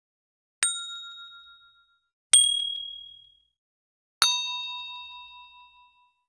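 Three separate chime-like ding sound effects, about a second and a half apart, each struck sharply and ringing away over a second or so; the third sits lowest in pitch and rings longest.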